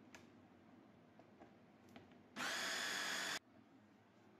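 Small electric food processor motor running in one short pulse of about a second, grinding cauliflower, cheese, flour and egg into a fritter batter; it starts about halfway through and cuts off sharply. A few light clicks come before it.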